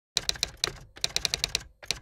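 Typewriter typing sound effect: a quick, uneven run of about a dozen sharp key clacks, with two short pauses.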